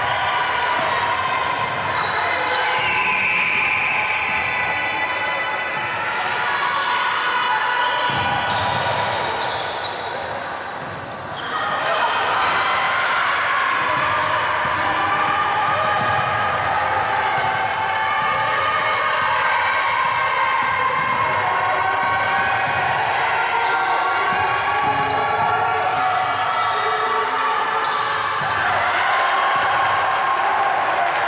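Basketball being dribbled on a hardwood court during live play, with voices calling out on and around the court.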